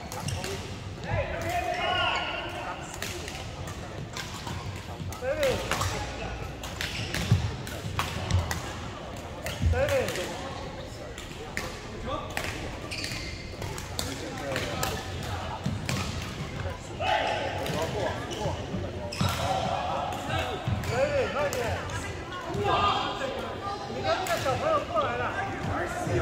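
Badminton hall ambience: frequent sharp cracks of rackets striking shuttlecocks on the surrounding courts, with people talking throughout and more chatter near the end.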